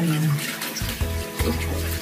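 Tap water running over hands being rinsed in a bathroom sink, with background music playing over it.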